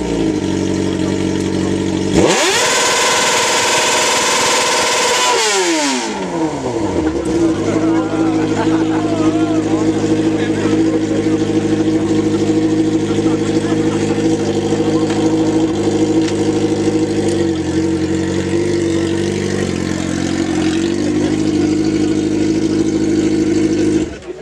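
Sport motorcycle engine idling, revved hard once about two seconds in to a high, steady scream held for about three seconds, then dropping back to a steady idle that runs on with small wavers in pitch.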